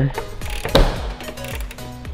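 Ratchet wrench clicking as it turns the mounting bolts of a car's windshield wiper motor, with one sharper click about three quarters of a second in, over background music.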